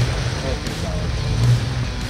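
Jeep Grand Cherokee engine running at low speed as it creeps through a muddy bog: a low, steady rumble that swells briefly about a second and a half in.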